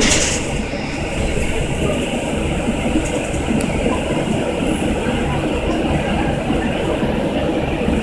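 Steady engine and road rumble of a city transit bus heard from inside its passenger cabin while it drives along, with a brief hiss right at the start.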